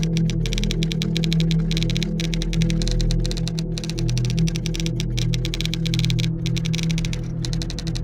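Low sustained ambient music drone under a rapid, unbroken run of typing clicks with brief pauses, a typing sound effect that keeps time with on-screen text being typed out.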